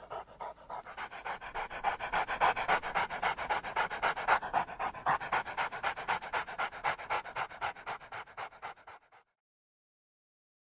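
Irish Wolfhound puppy panting rapidly and evenly, out of breath after a retrieve. It cuts off suddenly about nine seconds in.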